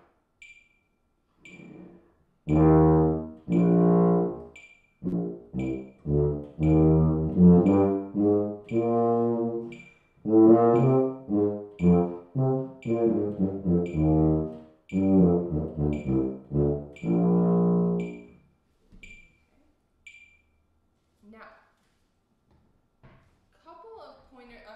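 Tuba played slowly to a steadily ticking metronome, with longer held notes at first, then shorter accented notes. The notes start about two seconds in and stop about eighteen seconds in. This is slow practice of a short section at a reduced tempo, with the accents brought out and the line pushed up the scale.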